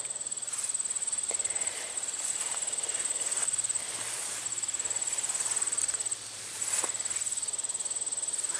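Insects trilling steadily in a high, rapidly pulsing chirr with short breaks, with a few faint footsteps.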